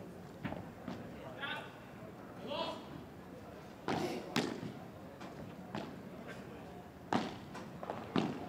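A padel rally: a padel ball struck back and forth by rackets and bouncing on the court, sharp hits at irregular intervals, the loudest a pair of hits about four seconds in and another about seven seconds in.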